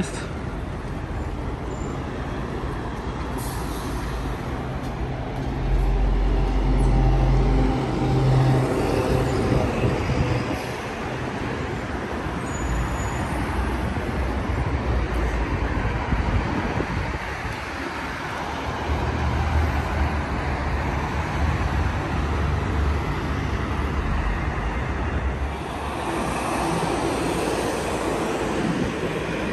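Road traffic on a busy multi-lane city street: steady engine and tyre noise, with heavier vehicles passing and a deeper rumble swelling about six seconds in and again about twenty seconds in.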